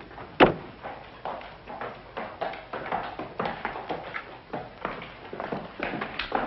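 A sharp knock about half a second in, then a run of light, uneven knocks and taps.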